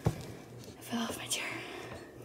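Faint whispering voice with a few short voiced sounds about a second in, and a click right at the start.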